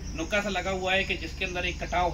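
A man talking, over a steady high-pitched drone of insects in the background.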